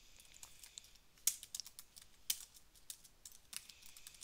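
Typing on a computer keyboard: quiet, irregularly spaced keystrokes.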